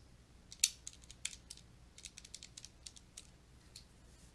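Faint, irregular tapping of keys, a run of short clicks as a multiplication is keyed in.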